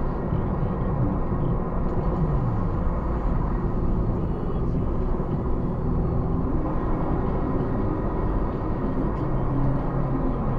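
Car driving on a road, heard from inside the cabin: a steady mix of engine and tyre noise. The engine note drops in pitch once, about two seconds in.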